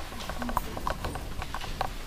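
A run of light, irregular taps and knocks, several a second, in a room.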